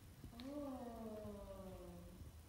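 A person's voice sounding one long vowel in a voice exercise, starting about half a second in and gliding slowly down in pitch as it is held.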